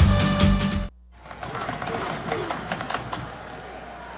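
Television sports broadcast music, loud, cutting off abruptly about a second in. A quieter, even crowd murmur of stadium ambience follows.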